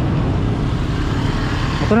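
Steady street traffic noise with a motorcycle engine running close ahead, heard from a moving bicycle; a man's voice starts right at the end.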